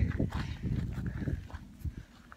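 Uneven low rumble of wind buffeting a phone microphone, with a few soft thuds, fading away near the end.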